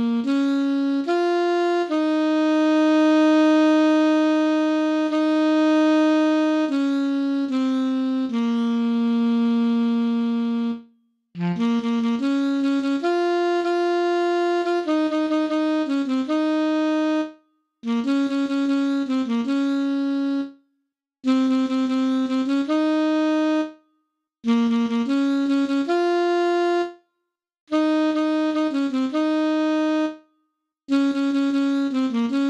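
Solo alto saxophone playing a slow melody at about 75 beats a minute: long held notes for the first ten seconds, then short phrases of quick notes, each broken off by a brief silence.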